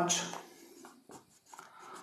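Marker pen writing on a whiteboard: a few faint, short scratchy strokes after the tail of a spoken word.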